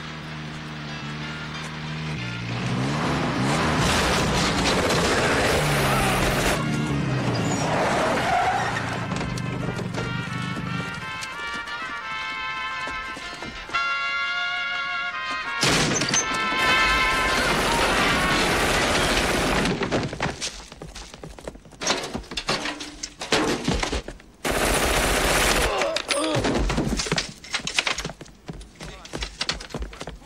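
Action-film soundtrack: score music for roughly the first half, then bursts of gunfire with sharp impacts through the second half.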